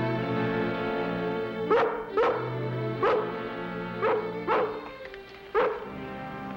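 Rough collie barking six times in short pairs over orchestral background music, urgent barks calling for attention.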